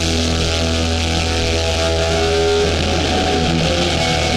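A hardcore punk band playing live and loud: distorted electric guitars and bass holding ringing chords over a deep steady bass note, moving to new notes a little past halfway through.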